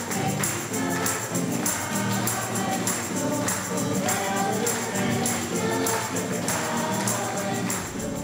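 A choir singing a hymn with music, a tambourine keeping a steady beat.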